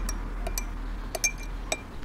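A teaspoon stirring in a small drinking glass, clinking against the glass several times at uneven intervals, each clink ringing briefly.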